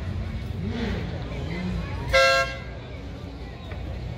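A vehicle horn gives one short toot, about half a second long, a little over two seconds in, over a steady low rumble and faint voices.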